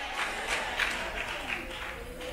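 Congregation applauding, the clapping slowly dying down.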